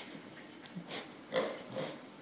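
Pink toy pig giving short grunting oinks as a puppy bites and squeezes it, twice in the second second.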